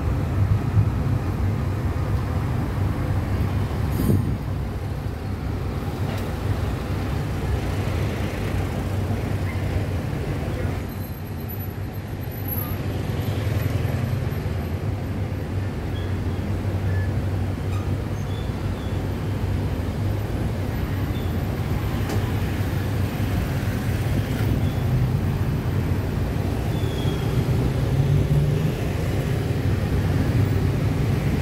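Steady engine drone and road noise of a moving songthaew (pickup-truck baht bus), heard from its open rear with traffic following close behind. A brief knock about four seconds in.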